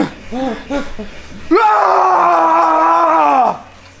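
A man's voice: two short vocal sounds, then a loud, long yell held at a steady pitch for about two seconds. It is an outburst of emotion and exertion right after a heavy bench-press set.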